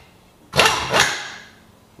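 Compact cordless impact tool spinning a clutch-separation tool bolt into a Can-Am Maverick X3 primary clutch. It makes two short runs, about half a second apart, starting about half a second in, and the second fades out.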